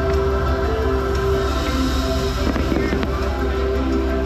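Pyrotechnics going off with a crackling burst a little past the middle, over loud orchestral show music.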